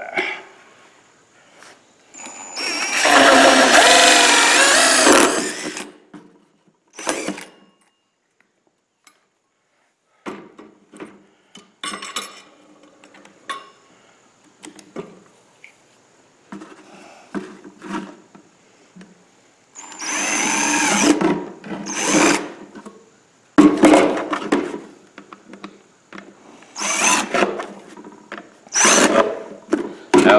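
Cordless drill spinning a hole saw through the lid of a plastic coffee canister. The motor's pitch wavers as it cuts, in one run of about three seconds near the start and a shorter run later, with scattered knocks and clatter between.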